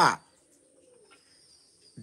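A man's spoken 'uh' ends the first moment, then a quiet pause with a faint, low dove's coo in the background and a steady faint high hiss.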